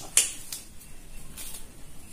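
Disposable glove being pulled onto a hand: a sharp snap of the stretched glove just after the start, then a softer crinkle about a second and a half in.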